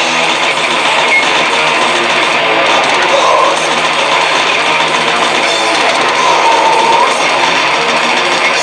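Death metal band playing live, with distorted electric guitars over the full band in a loud, dense, unbroken wall of sound.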